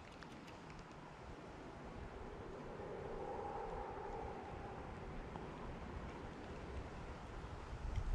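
Faint steady outdoor background noise, with a faint hum that swells and fades in the middle.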